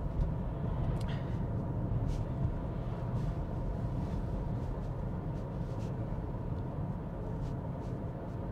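Steady low road and tyre rumble inside the cabin of an MG5 EV electric estate car driving along, a quiet ride with no engine note, over a road surface that isn't the best.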